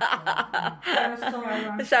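Women chuckling and laughing amid lively talk.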